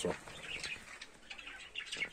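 Small birds chirping faintly, in short, scattered high calls.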